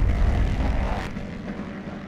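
Closing logo sound effect: a loud low rumbling whoosh, strongest at the start and fading steadily away.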